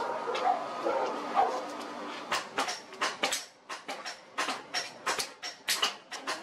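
Rapid hammer blows on a hot steel machete blade on the anvil, starting about two seconds in, roughly four or five sharp strikes a second. A wavering pitched whine is heard before them.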